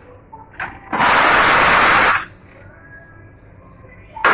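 Espresso machine steam wand being purged: one loud, even hiss lasting just over a second, starting about a second in, with a short click just before it.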